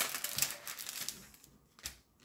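Plastic cover film on a diamond-painting canvas being handled by the fingers while its glue is tested for stickiness: a quick run of small crinkles and clicks that fades out about one and a half seconds in, then a single tap near the end.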